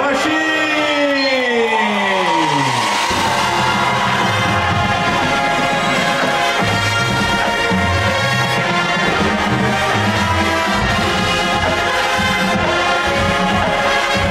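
Marching band playing its halftime show. The brass open with a falling glissando over the first three seconds, then the full band carries on with sustained brass chords over low bass notes.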